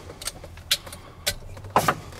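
Switches on an Elgin Road Wizard street sweeper's cab control console being flipped: four sharp clicks, the last near the end the loudest, over a faint steady low hum.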